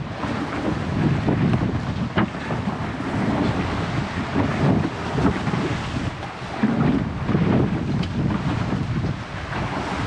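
Wind buffeting the microphone in uneven low gusts, over the wash of choppy sea water and waves around a wooden longtail boat.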